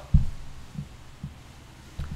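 A single loud, low thud just after the start, followed by two fainter low knocks, over a steady low hum.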